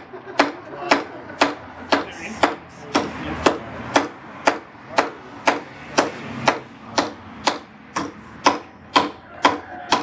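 A large forged knife chopping into a wooden 2x4 over and over, with sharp blade-into-wood strikes about two a second in a steady rhythm, cutting through the board as in an ABS performance chop test.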